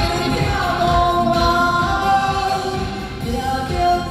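A woman singing into a microphone over a backing track with a steady beat, carried through the hall's sound system.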